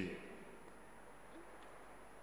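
Quiet room tone after a man's voice trails off in echo at the start, with a faint low voice-like sound about one and a half seconds in.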